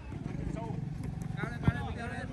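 A football kicked once, a single sharp thud about three-quarters of the way through, over players' distant shouts and a low steady hum.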